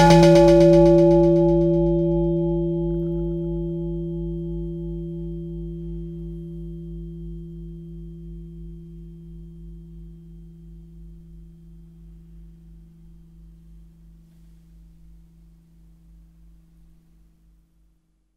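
A single sampled struck sound, a bell-like ringing tone that starts at full strength and fades away slowly over about eighteen seconds, with a low pulsing hum under it. It is played through a Tone.js pitch-shift effect set two semitones up, so it sounds slightly higher than the original sample.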